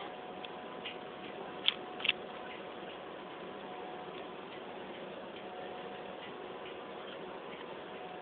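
Steady hum of a car ferry's machinery under way, with two sharp clicks close together about two seconds in.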